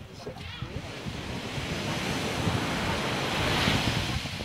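Wind rumbling on a phone's microphone with surf washing on a beach, a rushing noise that grows louder toward the end and then cuts off suddenly.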